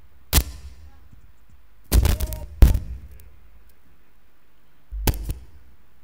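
Several sharp knocks and thumps close to the microphone: one a little after the start, a quick cluster of three or four about two seconds in, and two more about five seconds in.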